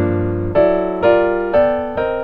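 Piano chords struck one after another about every half second, the last one left to ring and fade: a progression moving through a mu chord (major triad with an added second, its third in the bass) into G minor seven.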